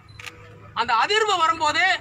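A man speaking, after a short pause near the start that holds one brief click.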